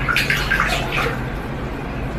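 Water splashing and sloshing in a stainless steel kitchen sink as a cat paws and steps in it. The splashes come in quick short bursts in the first second and settle down after that.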